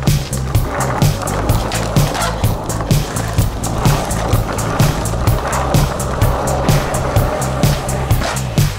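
Backing music with a steady drum beat and bass, over skateboard wheels rolling on concrete.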